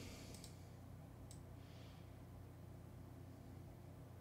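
Near silence: room tone with a steady low hum, broken by a few faint mouse clicks, two just after the start and one about a second in.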